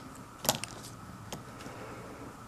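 Plastic pens clicking against each other and the paper as one pen is set down and another picked up: one sharp click about half a second in, a few lighter clicks just after, and a single tap a little past the middle.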